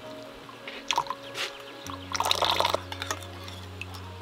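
Liquid poured in a thin stream into a ceramic bowl of chili sauce and a metal spoon stirring it, with a few small clicks and the loudest splashing stir a little past halfway, over steady background music.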